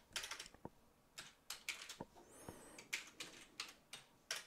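Quiet, irregular keystrokes on a computer keyboard, about a dozen separate clicks, as code is typed and a typo corrected.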